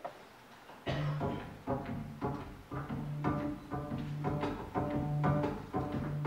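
Acoustic folk band starting a song about a second in: plucked strings over double bass in a steady rhythm of about two strokes a second, with accordion.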